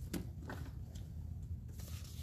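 A few faint clicks and rustles of small handling noises, spread through the two seconds, over a steady low hum.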